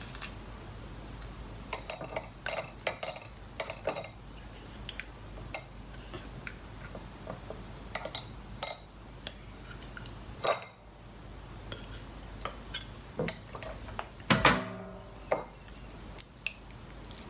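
An opened tin can clinking and scraping against a wire-mesh sieve and glass bowl as canned tuna is pushed out to drain its brine. The clinks are irregular, busiest about two to four seconds in and loudest in a short burst near the end, which rings briefly.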